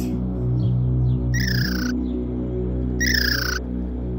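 Background music holding low sustained tones. Over it come two short high calls that fall in pitch, like a bird's, about a second and a half apart.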